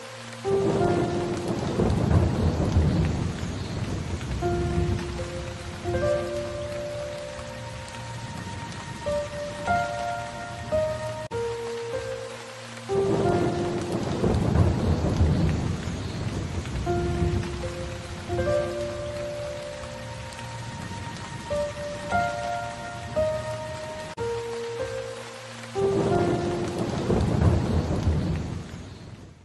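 Steady rain with rolling thunder, the thunder surging up three times, about a second in, halfway through and near the end. A slow instrumental melody of held notes repeats over the rain.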